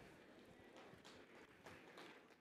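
Near silence: room tone with a few faint, irregular taps and knocks, like hands handling a laptop on a lectern.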